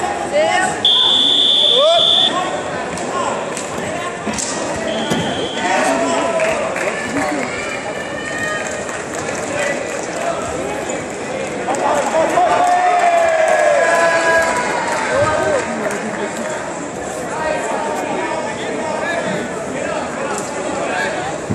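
Competition hall with spectators and coaches shouting and talking throughout. A steady high electronic timer buzzer sounds for about a second and a half near the start, then briefly again about five seconds in.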